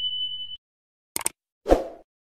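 A short steady high tone that stops about half a second in, then a sharp double click and a dull thump just after, the thump being the loudest sound.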